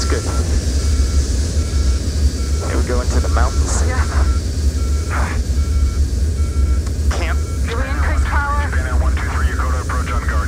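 Deep, steady rumble of airliner flight noise in the cockpit, with an electronic warning tone beeping over it in a steady repeating pattern. Indistinct voices come in about three seconds in and again from about seven seconds.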